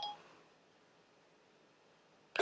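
A single short electronic chime from Siri on a phone, sounding the moment a spoken request ends, followed by near silence.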